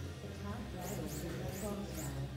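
Indistinct background voices in a large hall over a steady low hum, with a few short high-pitched squeaks about a second in.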